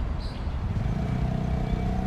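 A motor vehicle engine running with a steady, even hum that comes in about a second in, over a low rumble of background noise.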